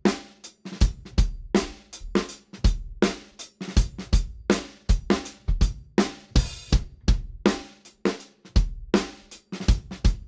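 Recorded drum-kit tracks of a pop-rock song playing back on their own during mixing: kick, snare, hi-hat and cymbals in a steady beat. There is a denser splash of cymbal noise about six and a half seconds in.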